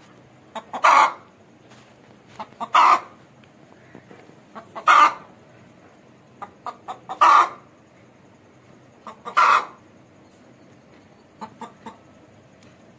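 Aseel hen calling in five repeated phrases about two seconds apart, each a few short clucks leading into one loud, longer call, with a last run of short clucks near the end.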